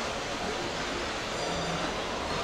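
Steady rushing outdoor city background noise, with faint distant voices.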